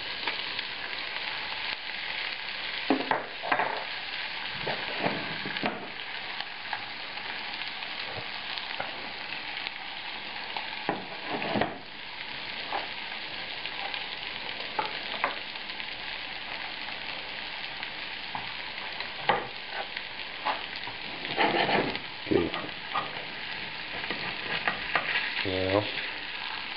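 Pepper-crusted steak and chopped shallots sizzling steadily in hot butter and oil in a frying pan as the first side sears. A few short knocks and scrapes come through, with a spatula working under the steak near the end.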